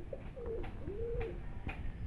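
Homing pigeons cooing: a few low coos, the last a longer one that rises and falls in pitch.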